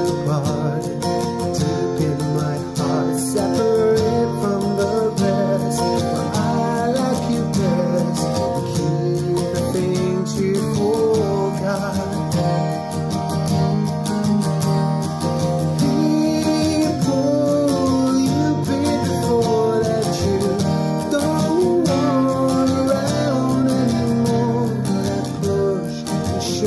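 Acoustic guitar playing an instrumental passage of a slow song, chords ringing steadily with no sung words.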